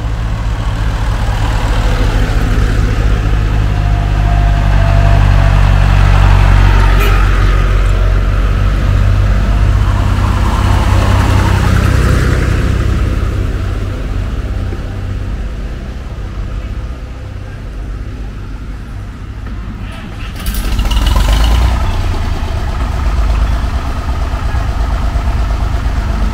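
Vintage tractor engines running as the tractors drive past one after another, a steady low chug. The sound is loudest for the first dozen seconds as one tractor goes by, falls away in the middle, then rises sharply about 20 seconds in as the next tractor comes close.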